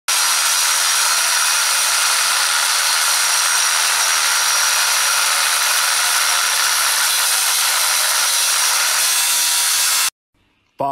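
Corded angle grinder with its disc cutting into steel square tube, a steady high-pitched grinding whine at constant speed and load, which cuts off abruptly at the very end.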